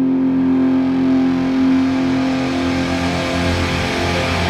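Rock song intro: a sustained, distorted droning chord holds one steady pitch while it swells and grows brighter and noisier. A heavier low rumble builds in near the end as the full band is about to come in.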